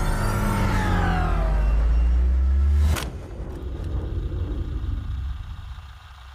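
Film sound effect of spaceships flying past: a deep, loud rumble with several whines falling in pitch, cut off by a sharp hit about three seconds in, then a softer tail that fades away.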